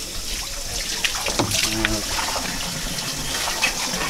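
Water running steadily from a hose and splashing onto a fish-cleaning table.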